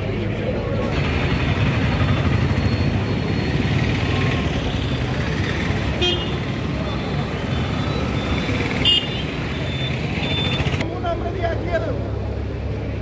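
Crowd hubbub mixed with street traffic noise, with a run of short, high-pitched toots sounding repeatedly in the second half.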